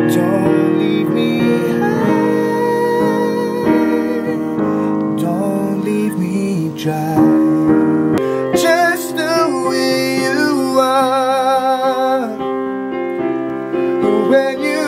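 Piano chords accompanying a man singing a slow ballad; his voice, with clear vibrato, comes in strongly about eight seconds in over the piano.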